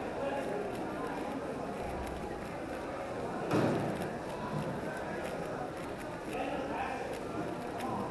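A Cubicle WuQue M 4x4 speedcube being turned rapidly in a speed solve, its plastic layers clicking, over a background of indistinct voices. A brief louder sound comes about three and a half seconds in.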